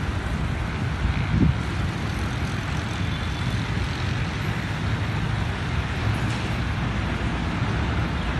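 GEU-40 diesel-electric locomotive hauling a passenger train on approach: a steady low rumble of its engine, with no horn.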